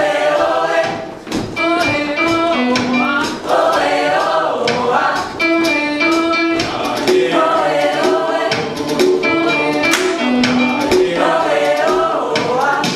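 A mixed show choir sings an upbeat pop song in several parts over a live band, with drums keeping a steady beat.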